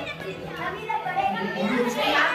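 Many young children's voices at once, chattering, calling out and laughing as they play.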